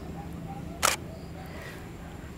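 A single DSLR camera shutter click, short and sharp, just under a second in, over a steady low background.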